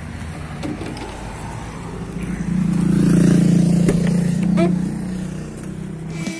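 A motor vehicle's engine running close by: a steady low drone that swells about two seconds in and fades again about five seconds in, over traffic noise.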